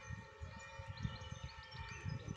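Quiet outdoor ambience: an uneven low rumble of wind and handling noise on the phone's microphone, with a faint steady hum above it.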